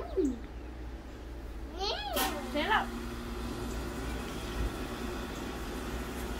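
A toddler's short, high-pitched vocalisations, wordless cries that rise and fall in pitch: one right at the start and a few more about two seconds in.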